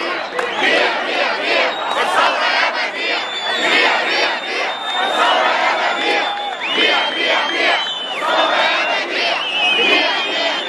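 Large crowd of protesters shouting together, loud and pulsing in a rhythmic chant, with a thin high steady tone sounding on and off above the voices.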